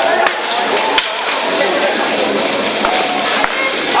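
Armoured fighters' weapons and shields striking steel plate armour in a buhurt melee: a handful of sharp, irregular knocks and clanks over constant shouting and crowd voices.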